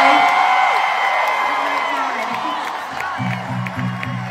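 Arena concert crowd screaming and whooping in long, high-pitched cheers that slowly thin out. About three seconds in, a low rhythmic beat starts up.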